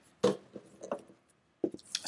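Tarot cards being laid down on a wooden tabletop: a few short taps and slides of card on wood.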